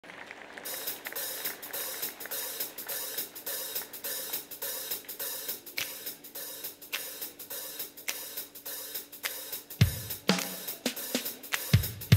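Drum kit opening a pop song: a steady, evenly spaced hi-hat pattern, joined about ten seconds in by heavy low drum hits in a fill.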